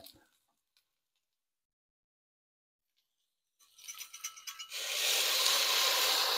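Beef broth poured from a glass measuring cup into a hot enamelled Dutch oven of sautéed onions and chorizo, hissing and sizzling as it hits the pan. A few light clinks of glass come about four seconds in, and the sizzle starts about a second later; before that there is near silence.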